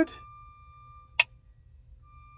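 A single sharp click about a second in as a fingertip taps the OK button on a Precision Planting 20/20 monitor's touchscreen, over a faint steady high tone.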